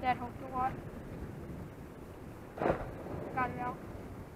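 A steady wash of wind and surf noise, with brief indistinct voices near the start and again near the end, and one short thump a little past the middle.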